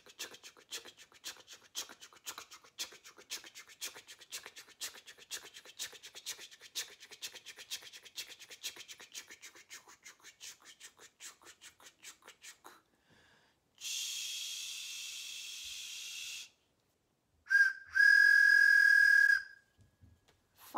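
A train imitated for children: about twelve seconds of rhythmic chugging, about four strokes a second, then a steam-like hiss. It ends with a train whistle, a short toot and then a long steady high toot, the loudest sound.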